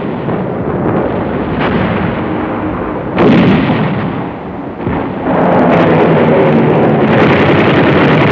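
Gunfire and artillery explosions of a battle: a continuous din of shots and blasts, with one loud blast about three seconds in and a heavier, unbroken barrage from about five seconds on.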